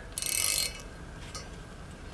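A 14 mm ratcheting wrench clicking in one short run of about half a second as it turns back on a threaded EGT-probe fitting in a cast-iron exhaust manifold.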